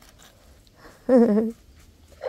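Faint scraping of a hand trowel over the fresh cement top of a grave, with a short, loud, wavering vocal sound a little past one second in.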